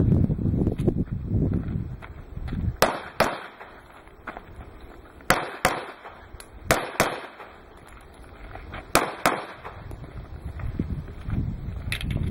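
Pistol shots fired in four quick pairs, the two shots of each pair about a third of a second apart and the pairs a second or two apart.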